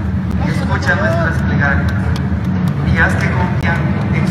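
Indistinct voices, not clear enough to make out words, over a steady low rumble.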